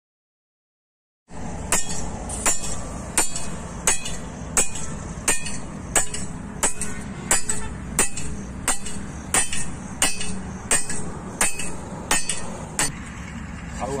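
Hammer blows driving a galvanised-iron earth rod into the ground: about seventeen evenly spaced metallic strikes, roughly three every two seconds, each with a short ring. The blows start about a second and a half in and stop about a second before the end.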